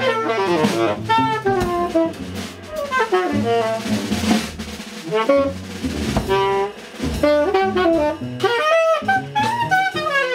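Live small-group jazz: a tenor saxophone plays fast, leaping improvised lines over walking double bass and a drum kit with cymbals. A cymbal wash swells about four seconds in.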